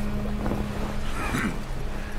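Film sound effects: a rushing, wind-like rumble over a steady low droning tone, with a brief rising-and-falling sound a little past a second in.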